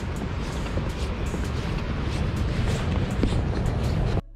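Steady rushing noise of ocean surf breaking on the beach.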